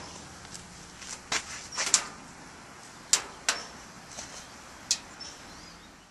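Wood fire burning hard inside a homemade ammo-can tent stove, giving irregular sharp pops and cracks, about eight of them, over a low steady hiss. The stove is getting a hard burn-off fire to cure it before first use.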